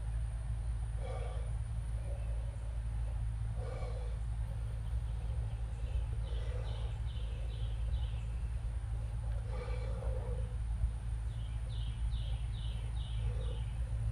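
Outdoor ambience: a steady low hum, with a bird giving two quick runs of about five high chirps, one near the middle and one near the end, and a few soft, lower sounds in between.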